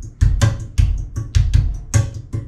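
One hand drumming on a hard surface beside a chair: heavier palm thumps alternating with lighter thumb and finger taps in a quick, even linear pattern.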